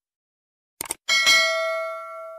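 Subscribe-button sound effect: a quick mouse click just under a second in, then a bright bell ding that rings on and slowly fades.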